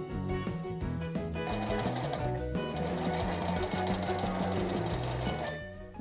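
Domestic sewing machine stitching a steady run, sewing Petersham waistband ribbon onto satin, from about a second and a half in until shortly before the end, over background music.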